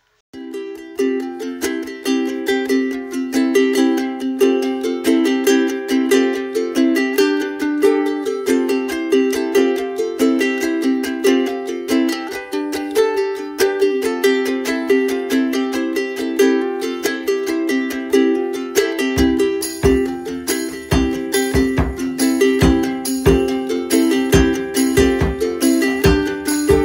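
Background music: a bright tune of quick, short notes in a steady rhythm, with a low beat joining about three-quarters of the way through.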